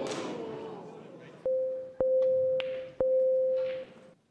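Electronic beeping from the Shoot-Out shot clock: a steady mid-pitched tone that starts about one and a half seconds in and restarts about once a second, three to four beeps, warning that the shot time is running out. Crowd noise fades away in the first second.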